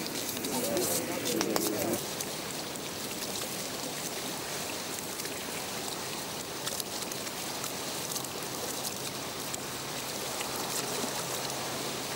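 Voices murmuring for about the first two seconds, then a steady, even rushing noise of river water along the shore.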